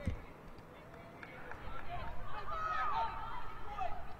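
Faint field sound at a football match: distant voices shouting and calling out on the pitch, starting about a second and a half in, over a low outdoor rumble.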